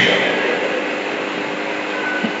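Steady hiss and low hum of the room's background noise heard through an amplified microphone, with no speech.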